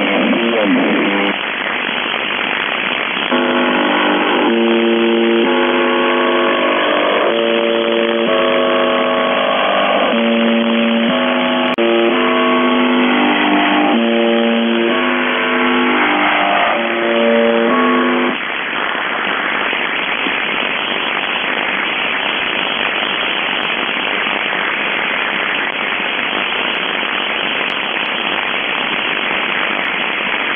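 Shortwave receiver audio from the 4625 kHz channel: over radio hiss, a string of steady pitched tones that change in steps, like a simple melody, runs for about fifteen seconds, then only static hiss remains.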